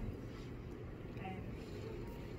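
A steady low rumble of background noise, with a voice faintly heard over it twice.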